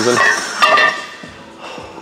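Metal weight plates clinking and ringing against each other and the barbell sleeve as a 10 lb plate is loaded, loudest in the first second, then fading.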